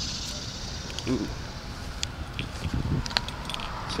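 Footsteps through brush and grass and knocks from a hand-held camera, over a steady low rumble of road traffic.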